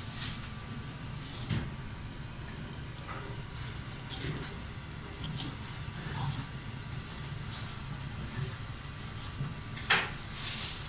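A knife working along a salmon trout fillet on a plastic cutting board, with scattered short knocks and scrapes of the blade against the board and the sharpest knock just before the end, over a steady low background hum.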